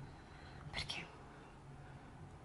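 A woman whispers one short word, "Perché?", about a second in. Otherwise there is only quiet room tone with a faint low hum.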